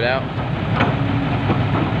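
Heavy diesel engines of an excavator and a dump truck running steadily, with one short knock a little before the middle.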